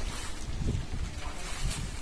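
Wind buffeting the microphone, an uneven low rumble, with a few brief scuffs or splashes over it.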